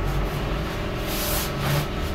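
Steady low machinery hum, with a brief rustling swish of a high-visibility jacket being flapped about a second in.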